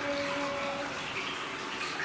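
Steady running water: hot-spring water pouring into a bath.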